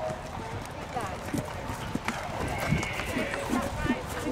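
Hooves of a show-jumping horse cantering on grass turf, a run of dull irregular thuds, heard under people's voices talking.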